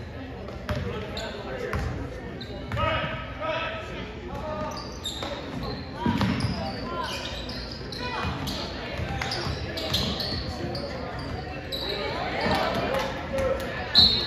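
Basketball dribbled on a hardwood gym floor, with short high sneaker squeaks and voices from players and spectators, in a large gym's echo. A sharp, loud sound comes at the very end.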